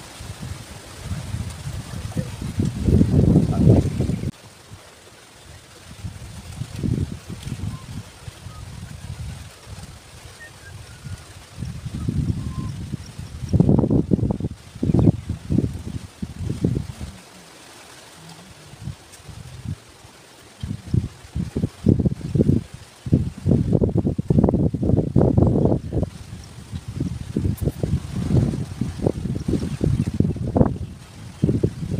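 Wind buffeting the microphone in gusts: a low rumble that swells for a few seconds at a time and drops away in between.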